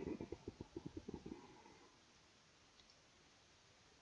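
Computer keyboard typing: a quick run of about ten keystrokes over the first second and a half, then near silence.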